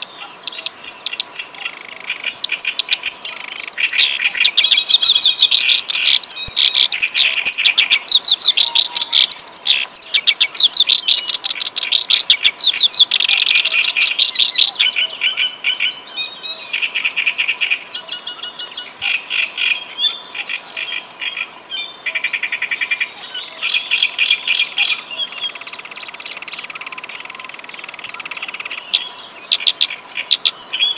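Reed warbler (kerak basi) singing a long, loud song of rapid repeated notes in bursts and phrases, with short breaks between them and a softer, more broken stretch in the second half.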